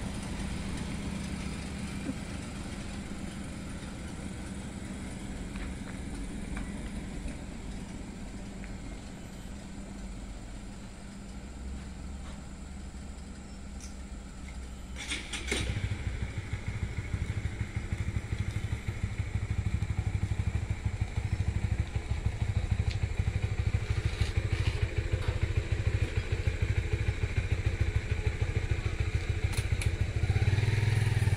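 A small hatchback's engine running as the car pulls away, its hum slowly fading. About halfway through there is a click, and then a motorcycle engine runs steadily close by, louder than the car.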